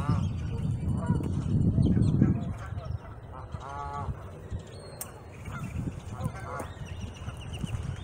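Geese honking: one clear honk about four seconds in, with a few fainter calls later. Wind rumbles on the microphone through the first couple of seconds.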